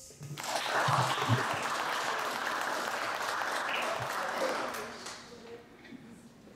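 A small audience applauds at the end of a musical piece. The clapping starts just after the last note, holds steady for several seconds and dies away about five seconds in.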